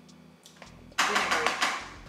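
A quiet room with a few faint taps, then a short spoken word about a second in.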